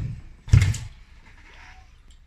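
Child's bike landing a gap jump between two kicker ramps: a loud thump about half a second in as the wheels come down, just after a softer thud from the takeoff.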